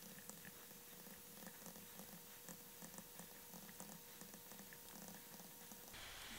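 Near silence: room tone with a faint steady hum and a few faint ticks.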